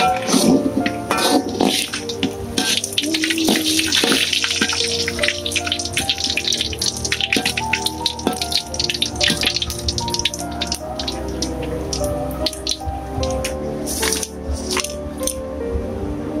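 Salted fish frying in hot oil in a metal wok, the oil sizzling with a dense crackle of pops, under background music with held notes.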